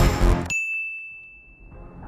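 Music cuts off abruptly about half a second in, and a single bright ding, a chime sound effect, rings on one high tone and fades away over about a second and a half.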